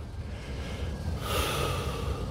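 A man taking one deep breath close to the phone's microphone, starting a little past halfway, as a calming breathing exercise, over a low steady rumble.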